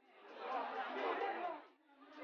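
Indistinct chatter of a crowd of people talking at once, fading in at the start and dipping near the end.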